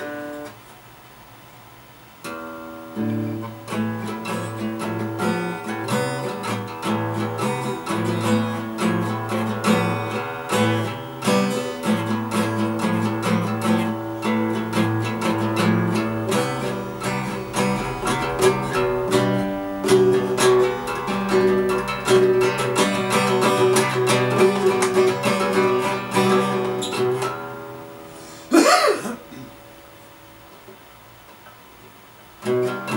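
Steel-string acoustic guitar practised by a self-taught beginner, chords strummed and notes plucked with held notes ringing. The playing begins about two seconds in and stops shortly before the end. It is followed by one brief, loud sliding sound that rises and falls in pitch.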